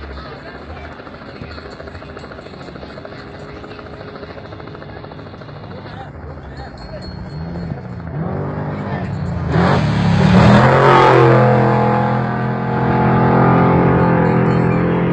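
An off-road race vehicle's engine approaches at speed, its pitch rising and getting louder from about eight seconds in. It is loudest as it passes, about ten seconds in, then holds a high, steady note at full throttle.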